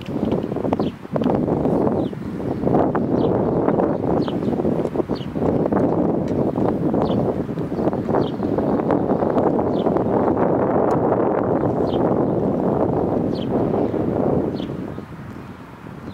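Wind gusting on the microphone, rising at the start and dying down near the end. Short high chirps repeat about once a second underneath.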